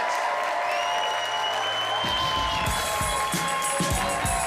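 Audience applauding over the show's closing music; a steady drum beat comes in about halfway through.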